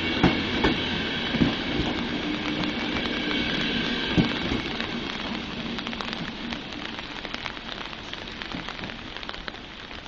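Intercity passenger coaches rolling away along the track, wheels knocking over rail joints with a faint whine, fading out over the first half. Steady rain follows.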